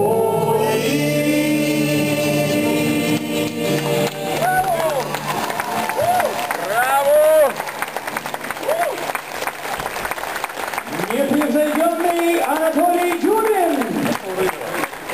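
A folk ensemble with accordion and guitars holds the final chord of a song for about four seconds. Then the audience applauds, mixed with rising and falling calls from voices.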